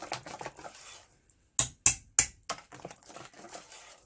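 Wire whisk beating batter in a stainless steel bowl, its wires clicking against the metal in quick, irregular strokes. There is a brief pause about a second in, then a few louder sharp taps before softer whisking resumes.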